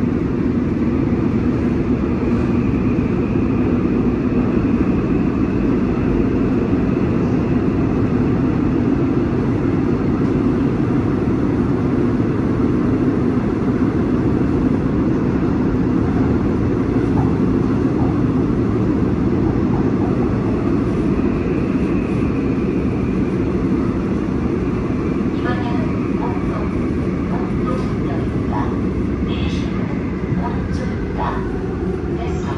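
Seoul Line 5 subway train heard from inside the passenger car while running through a tunnel: a steady, loud low rumble of wheels on rail, with a faint high whine that comes and goes. A few short clicks come near the end.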